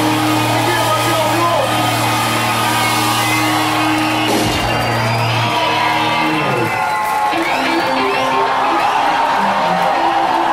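Live punk rock band with distorted electric guitars: a low chord held and ringing until about six seconds in, then short repeated guitar notes picked over it, with the crowd shouting.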